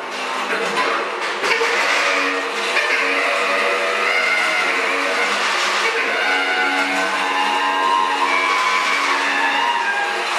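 A bass clarinet and a tuba improvising together. They play continuous held low notes with rough, shrill overtones layered above them.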